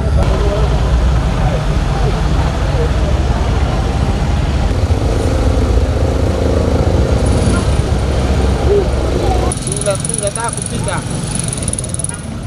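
Outdoor background noise with people talking: a steady low rumble that drops away suddenly about nine and a half seconds in, after which voices and passing road traffic are heard.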